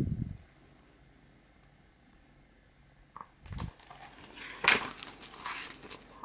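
Paper rustling and handling sounds as a page of a picture book is turned, starting about three and a half seconds in and loudest near five seconds.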